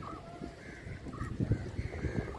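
Crows cawing in short calls over a low rumble that is strongest about one and a half seconds in.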